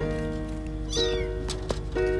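A kitten mews once, a short high call falling in pitch, about a second in, over background music with held notes.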